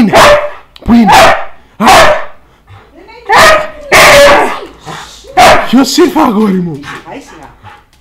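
Husky-type dog barking loudly, about six short barks spaced roughly a second apart, with the barking stopping about five and a half seconds in.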